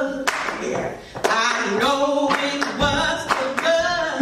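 Voices singing a church song over instrumental backing, with a few sharp strokes through it and a brief dip in loudness about a second in.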